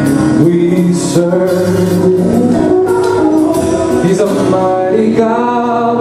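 Gospel worship music: a man singing long held notes over an electronic keyboard.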